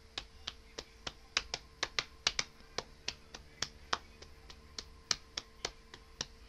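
A quick, irregular series of sharp clicks or taps, about three a second, loudest through the middle, over a faint steady hum.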